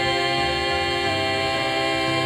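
Four voices, two men and two women, holding one long sustained chord of a gospel song into handheld microphones, with a slight vibrato.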